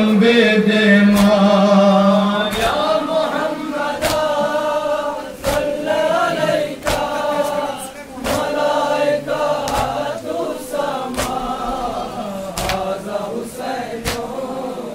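A group of men chanting a Shia nauha together, with the crowd's hands striking their chests in unison (matam) about once every second and a half.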